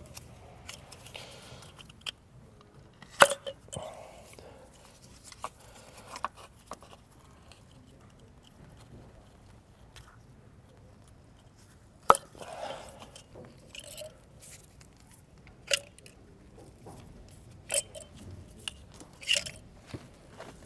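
Ignition coils of a VW 1.8T engine being pulled up out of the spark plug wells by hand: a few sharp plastic clicks and pops several seconds apart, the loudest about three seconds in and again about twelve seconds in, with soft crunching and rustling of rubber and plastic between.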